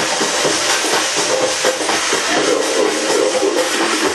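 House/techno DJ set playing loud over a festival sound system, in a breakdown: the kick drum and bass are cut out, leaving a hissing noise wash and a held synth line in the middle range. The bass drops back in right at the end.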